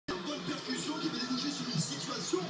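Football match broadcast sound played from a television: stadium crowd noise under a commentator's voice.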